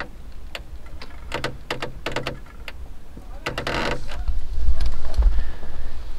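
Light scattered ticks of graupel pellets striking glass over a steady low rumble, which swells about four seconds in.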